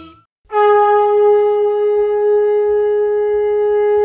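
Music fades out into a moment of silence, then a conch shell (shankh) is blown in one long, steady note, as is customary at the start of an aarti.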